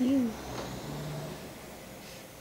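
A young woman's brief voiced sound, one short note falling in pitch, at the start, followed by a faint low, steady hum.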